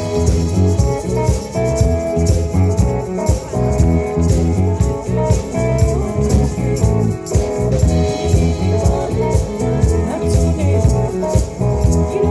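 Live rock band playing: electric guitar, bass guitar and drum kit with a steady beat.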